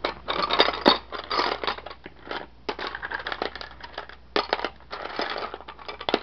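Seashells clattering and clinking against each other in a plastic bin as a hand rummages through them: a dense, uneven run of small clicks and rattles.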